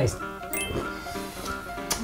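Light background music with held notes, and a short burst of noise near the end.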